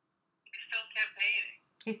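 A short stretch of a thin-sounding voice, its low tones missing as over a phone or call line, about half a second in. A woman starts speaking near the end.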